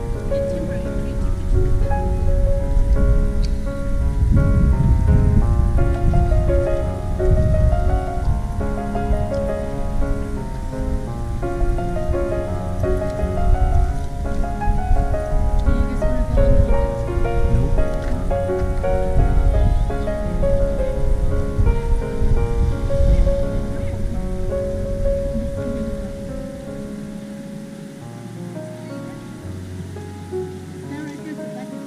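Piano music, a melody of held notes, with a low rumble beneath it that dies away near the end.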